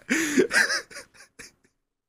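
A man laughing: a few short bursts of laughter that grow fainter and trail off about one and a half seconds in.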